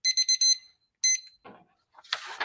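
Timer alarm beeping in quick high-pitched groups, about four beeps in half a second and then another short group, signalling that the speaker's debate speech time has run out.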